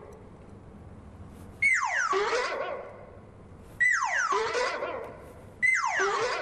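A comic sound effect played three times, about two seconds apart. Each starts suddenly, slides steeply down in pitch and ends in a wavering, fading tone, like a cartoon whinny.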